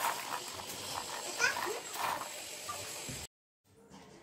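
Crunching of crisp fried rice sandige (rice fryums) being chewed, with a short rising squeak-like call about one and a half seconds in. The sound cuts off abruptly just after three seconds.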